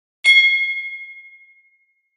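A single bright chime, struck once about a quarter second in, rings on a high steady tone and fades away over about a second and a half. It is a logo sound effect.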